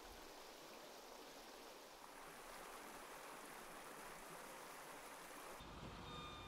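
Faint, steady sound of a shallow creek running over rocks. Near the end it gives way to a faint low rumble.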